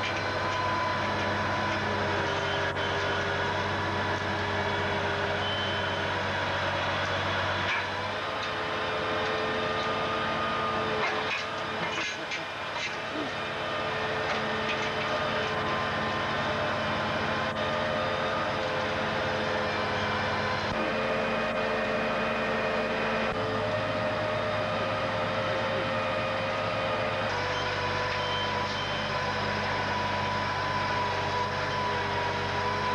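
Heavy log truck's diesel engine running steadily to power its hydraulic grapple crane while logs are lifted and swung, its note shifting several times as the crane is worked.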